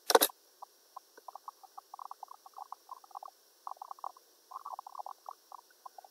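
A single sharp computer mouse click on the Run button, followed by a few seconds of faint, irregular ticking.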